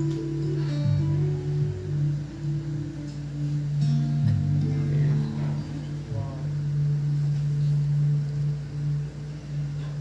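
Live solo acoustic guitar played softly in a song's intro, changing notes picked over a steady low held note.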